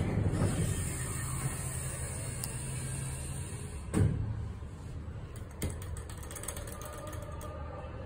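Elevator car travelling, with a steady low hum and creaking from the car, and a clunk about four seconds in and a lighter knock a moment later.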